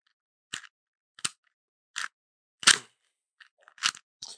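Rubik's Cube layers being turned by hand: a series of about six short plastic clicks, roughly one every 0.7 seconds, as the moves of a solving algorithm are made.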